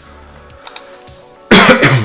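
A man's loud, abrupt cough about a second and a half in, over faint steady background music.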